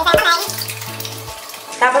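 Bathroom sink faucet turned on, its water running from the tap onto hands held under the stream as a steady hiss.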